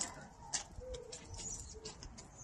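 A dog whimpering softly: a short, low whine near the middle and a briefer one near the end, among a few faint clicks.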